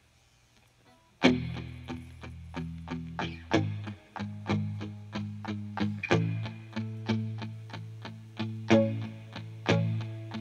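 Near silence for about a second, then a live rock band starts a song's instrumental intro: electric guitars through effects over bass guitar, with notes struck at an even pulse.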